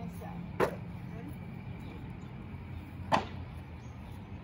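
A tennis ball smacking against a cut-off plastic milk jug scoop twice, about two and a half seconds apart, as it is thrown and caught in a game of catch. A steady low hum runs underneath.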